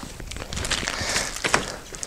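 Fabric sun canopies of a Bumbleride Indie Twin double stroller being folded back by hand: a rustle of fabric with a couple of sharp clicks.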